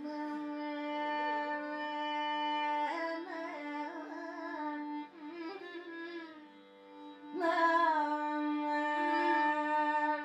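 Carnatic classical music: a woman singing a kriti in raga Kharaharapriya, with a violin accompanying and a steady drone underneath. She holds long notes with wavering gamaka ornaments, and the music grows quieter in the middle before swelling again past the halfway point.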